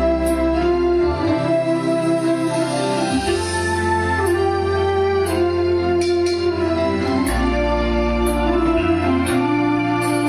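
Music with sustained organ-like keyboard chords over a shifting bass line, played loud through a 12-inch speaker cabinet. The cabinet is driven by a home-built four-channel power amplifier under test on a small 5-amp transformer, and the sound is clear.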